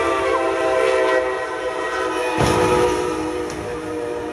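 Brightline passenger train sounding a long, steady horn blast as it bears down on the crossing, then a sudden loud crash about two and a half seconds in as it strikes the SUV stopped on the tracks. The horn keeps sounding after the impact and fades as the train passes.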